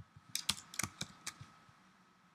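A short run of computer keyboard keystrokes: about five or six quick clicks within the first second and a half, then quiet.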